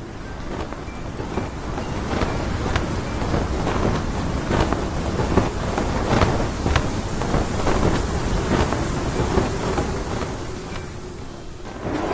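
Windy, storm-like rushing noise full of short sharp crackles, building up over the first few seconds and easing off near the end: a flying-through-the-sky sound effect.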